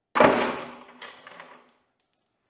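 A 3D-printed PLA S-hook breaking under about 30 pounds, and the plastic bucket of concrete weights hanging from it dropping onto the floor: one loud crash, then a few smaller knocks as the bucket and weights settle.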